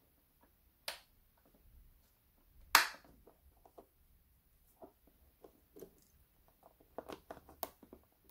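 Scattered small clicks and taps from hands handling a plastic switch block and wiring, with one much louder sharp click about three seconds in and a cluster of quick clicks near the end. No motor hum.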